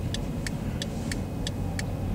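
Car running slowly along a street, heard from inside the cabin as a steady low engine and road rumble, with a quick, regular ticking over it.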